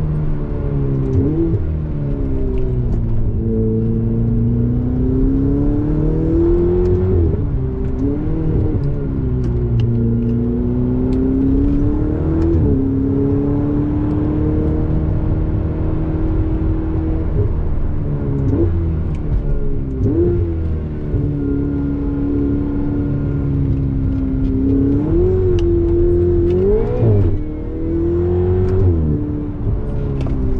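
Ferrari 488 Spider's twin-turbo V8 heard from the open cockpit while driving, its note rising and falling as the car accelerates and eases off. Short sharp jumps in pitch come several times, as the revs are blipped on gear changes.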